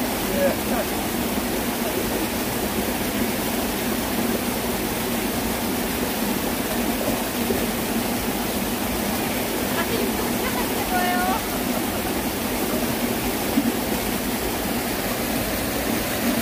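Shallow mountain stream running steadily over rocks, a continuous rush of water. A voice is heard faintly and briefly about half a second in and again around eleven seconds in.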